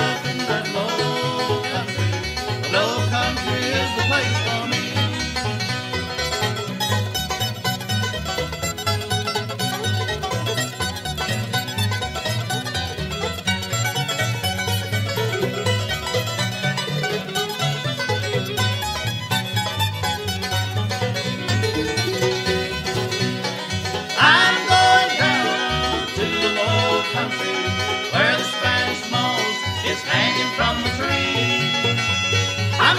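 Bluegrass band playing an instrumental passage without singing: five-string banjo over guitar and fiddle, with a louder, brighter phrase near the end.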